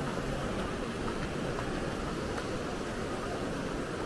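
Steady background hubbub of a busy department-store floor, an even wash of noise without clear voices, with a few faint clicks.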